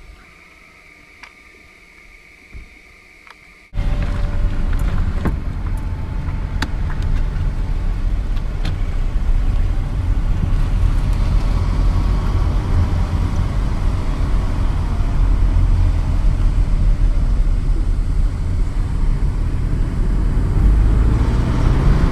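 A motor vehicle driving, with a steady loud rumble of engine and road noise that starts abruptly about four seconds in, after a quieter stretch with a faint steady high tone and a few clicks.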